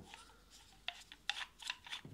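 Side handle being screwed into the gear head of a Hikoki angle grinder: quiet handling with a few short scraping clicks in the second half as the handle threads in.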